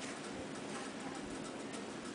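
Mostly a faint, steady hiss of room noise, with a soft tap at the very start as a paper tag is slid back into its pocket in a handmade accordion album.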